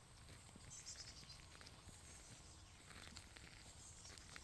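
Near silence: faint outdoor background with a few soft ticks.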